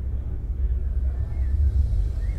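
Low, steady rumble of trade-show hall background noise, swelling slightly near the end.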